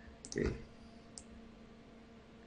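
Two computer mouse clicks, the second about a second after the first, over a faint steady hum.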